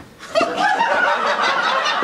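Audience laughing, breaking out about a third of a second in and carrying on steadily.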